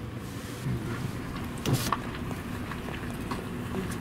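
A car's engine idling, heard inside the cabin as a steady low hum, with one brief sharp noise about two seconds in.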